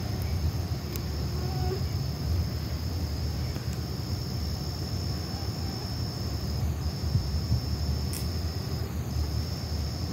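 Crickets trilling in one steady high note that breaks off briefly twice, over a steady low rumble.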